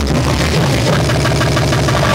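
Loud electronic breakcore played from a laptop through a club sound system: a dense passage dominated by a steady low drone, with a repeating higher pattern coming in about halfway through.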